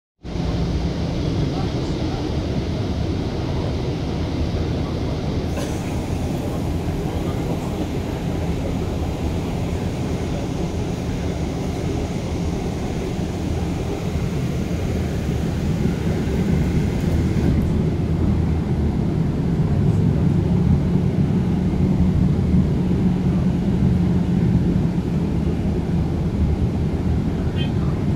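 Cabin noise inside a moving city bus: a steady low engine and road rumble that grows a little louder in the second half.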